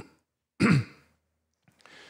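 A man clears his throat once into a close microphone, a short sharp sound a little over half a second in, then draws a faint breath before speaking again.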